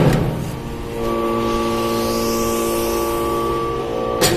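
Hydraulic metal briquetting press: a metal clank right at the start, then from about a second in a steady drone with several held tones as the press works through a compression cycle on metal chips.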